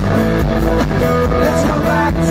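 Live twelve-string acoustic guitar playing a fast riff of ringing picked notes, with bass and drum kit underneath, heard from the audience at a concert.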